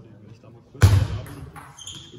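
Table tennis rally in a reverberant sports hall: light clicks of the ball, then one loud thump with a hall echo about a second in. Short high squeaks come near the end.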